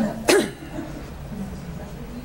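A single short cough about a third of a second in, followed by faint low murmuring.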